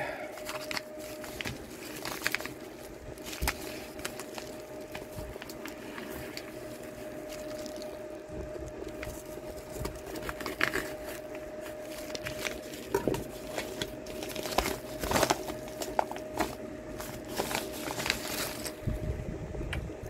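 A mailed package being opened by hand: irregular crinkling, rustling and tearing of the packaging, with sharper crackles now and then, over a faint steady hum.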